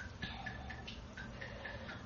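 Faint, regular ticking, about four ticks a second, in a pause between words.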